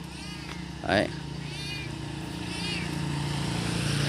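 A small engine running steadily nearby, its low hum slowly growing louder, with a few faint, short, high-pitched calls over it.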